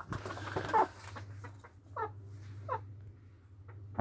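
A short burst of noise at the start, then two brief bird chirps about two and two-and-a-half seconds in, over a steady low hum.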